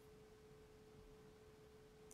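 Near silence, with only a faint, steady single-pitched tone.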